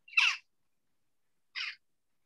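A bird calling twice, about a second and a half apart, the first call louder.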